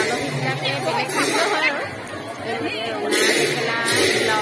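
Many overlapping voices of a crowd, a busy mix of talk with no single voice standing out.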